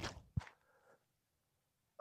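Two brief sounds from a disc golf drive off a concrete tee pad: a scuff at the start and a sharper thump a little under half a second later, then near silence.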